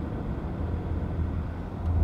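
Steady low rumble of a car's engine and tyres on the road, heard inside the moving car's cabin.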